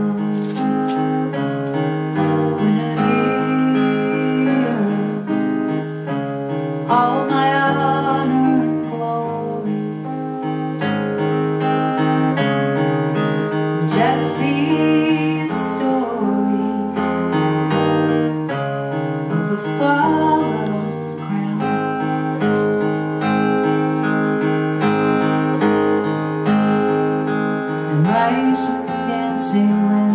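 A woman singing a slow folk song over an acoustic guitar played in a steady pattern of picked notes, live through one microphone; her sung phrases come and go with stretches of guitar alone between them.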